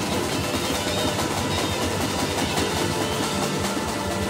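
Live band playing an instrumental passage, with timbales, drum kit and electric guitar, at a steady level.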